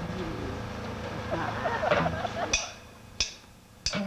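Four sharp, evenly spaced clicks about two-thirds of a second apart in the second half, a drummer's stick count-in for a funk band. Before them come a voice and crowd murmur.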